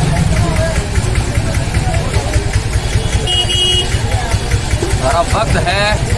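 Steady low rumble of street noise with faint background voices, and a brief high tone about halfway through.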